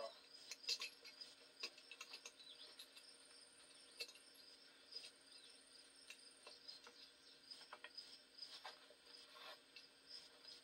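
Near silence: a steady, faint, high insect chorus, with scattered faint clicks of an open-end wrench working the bolts of a homemade brake drum puller.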